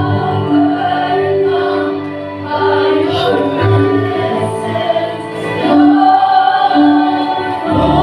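Live worship band and singers performing a slow gospel song: several voices singing in unison with long held notes over bass guitar and keyboard.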